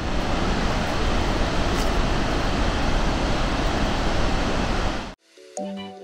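Kaieteur Falls, a huge single-drop waterfall, making a steady, dense roar of falling water that cuts off abruptly about five seconds in, after which music begins.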